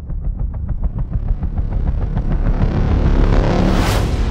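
Film trailer sound design: a deep rumble under a fast ticking pulse, about six ticks a second, swelling into a rising rush of noise that cuts off abruptly at the end.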